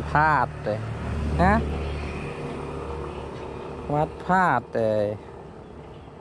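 A man speaking in short bursts in Thai, over a steady low rumble that fades after about two seconds.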